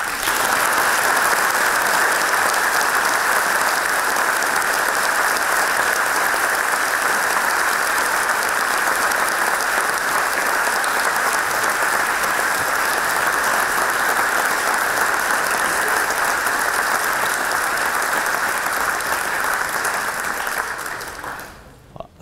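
Large audience applauding: the clapping starts at once, holds steady and dies away near the end.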